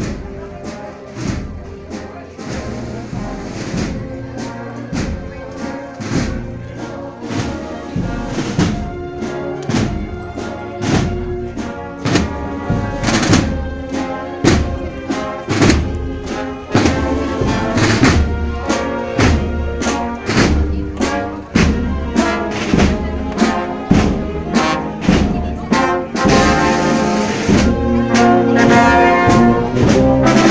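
A Spanish procession wind band (banda de música) playing a processional march, with brass carrying the tune over a steady drum beat. It grows steadily louder as the band draws near.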